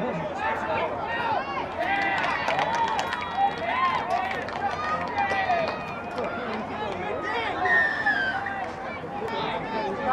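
Several voices shouting and calling to one another at once, overlapping throughout: players' on-field calls during touch football play.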